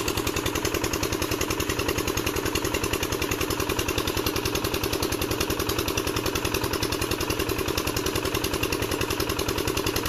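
8 HP single-cylinder diesel engine driving a tubewell water pump, running steadily with a rapid, even chugging beat. Water gushes from the pump's outlet pipe onto the ground.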